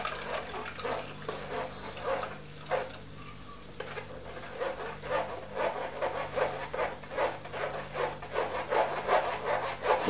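Rhythmic scraping strokes, about two or three a second with a short lull about three seconds in: blended cucumber pulp being worked against a mesh strainer to force the juice through.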